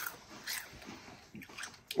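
Ruffles Double Crunch ridged potato chips being chewed: a few faint, irregular crunches.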